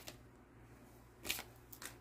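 Brief, faint rustles of a stack of Prizm baseball cards being handled and shuffled in the hands, cards sliding against one another; the louder rustle comes just over a second in, a smaller one near the end.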